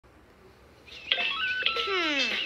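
Cartoon spaceship-bridge sound effects played from a TV: about a second in, a few short electronic beeps stepping up in pitch, then a falling tone near the end.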